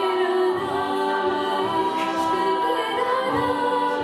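Women's a cappella group singing in harmony with no instruments: held chords under a moving melody line.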